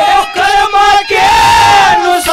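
Man singing a Haryanvi ragni at full voice through a stage microphone, in a loud, strained, near-shouted style. A few short phrases, then about a second in he holds one long high note.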